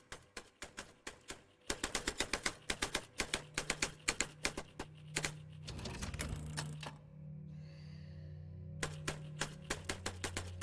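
Telex teleprinter keyboard being typed on: a few separate clacks, then fast, rapid typing from about two seconds in. The typing pauses around seven seconds and starts again near the end. A low music drone runs underneath from about three seconds in.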